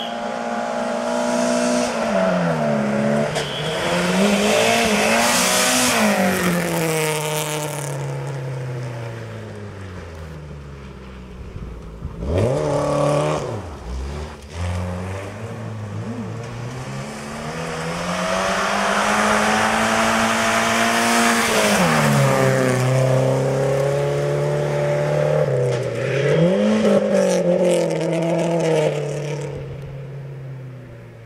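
Volvo 240 rally car engine at full throttle, revving up and dropping back at each gear change as it accelerates hard on gravel. The pattern repeats over several runs, with a short sharp burst of revs about midway.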